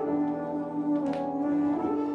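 Brass playing sustained chords that sound like a full brass section, with a fresh attack about a second in.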